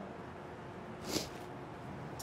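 Quiet background ambience with a faint steady hum, and one short breathy intake of air by a person about a second in.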